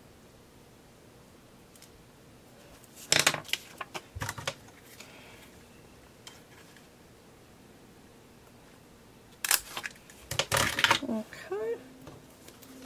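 Handheld plastic thumb-notch paper punch: a few sharp clacks of handling about three seconds in, then a louder cluster of clacks near the end as it is squeezed through the paper page.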